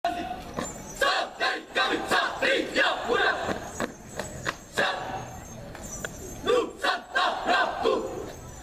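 A uniformed drill team shouting short calls in unison while marching in formation, in quick bursts about twice a second, with sharp percussive hits among the shouts. The shouting dies down for a couple of seconds in the middle and picks up again near the end.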